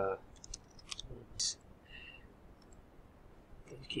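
Quiet, scattered clicks of a computer mouse and keyboard: several close together in the first second, then a few more spread out, with a short hiss about a second and a half in.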